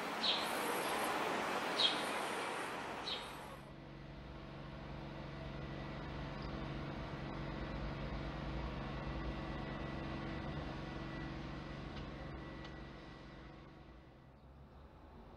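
Outdoor street noise with a bird chirping three times, about a second and a half apart. After about four seconds this gives way to a steady low motor hum, which fades near the end.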